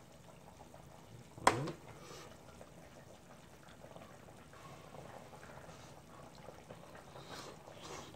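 A sharp mouth click with a short hummed "mm" about a second and a half in; the rest is quiet, with faint mouth and chewing sounds as a bite of fish is eaten.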